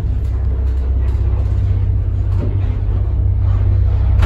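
1978 ZREMB passenger lift travelling in its shaft, heard from inside the car: a steady low hum and rumble with a few light clicks and rattles. Near the end the car reaches a landing.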